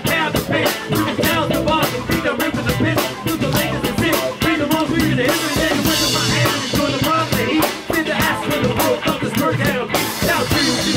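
Live rock band playing: drum kit with steady, busy strokes, electric bass and electric guitar, with a cymbal crash ringing out about five and a half seconds in.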